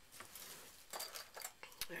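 Small plastic measuring spoon stirring a thick salt, flour and water paste in a small plastic cup: faint scrapes and a few light clicks.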